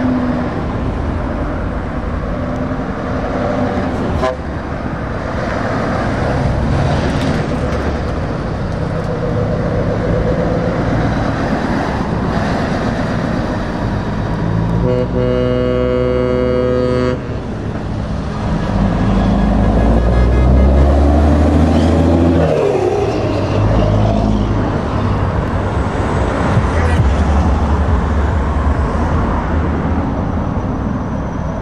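Heavy trucks driving past in a slow convoy, their diesel engines rumbling and swelling as each passes. Midway through, a truck air horn sounds one steady chord for about two seconds.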